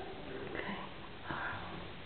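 A person sniffing twice, briefly, in a small quiet room.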